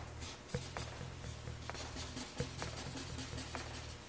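Felt-tip marker rubbing on paper in quick back-and-forth colouring strokes. Two brief soft knocks come about half a second in and again about two and a half seconds in, over a steady low hum.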